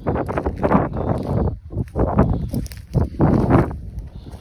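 Footsteps crunching through dry cut branches and wood chips, in three or four heavy surges, over a low rumble on the phone's microphone.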